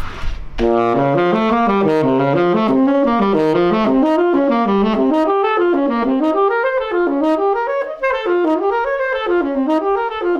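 Tenor saxophone playing diatonic seventh-chord arpeggios in C with the third flattened (melodic minor), alternating one arpeggio up and the next down. The result is a continuous run of quick, even notes zigzagging up and down in pitch, starting about half a second in.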